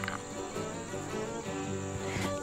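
Crickets chirping in a steady high drone, with a soft held chord of background music underneath.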